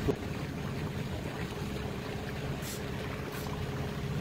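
A small boat's motor running steadily at low speed, a low even hum under the rush of water and wind, with two brief hisses in the second half.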